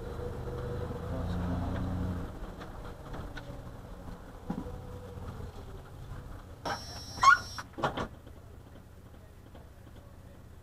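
Low engine and road rumble inside a slowly moving car, heard through a dashcam's microphone. It is loudest for the first two seconds, then eases. About seven seconds in comes a short, loud cluster of sharp, high-pitched sounds, two or three in a row, which is the loudest thing heard.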